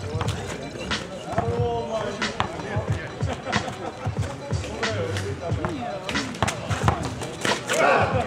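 Basketball dribbled on an asphalt court, bouncing repeatedly with sharp thuds a fraction of a second apart, over players' voices and music in the background.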